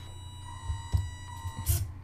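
Faint mechanical sounds from an Arduino-controlled Makeblock test machine being reset: a low hum and a thin steady whine, with a single sharp click about halfway through.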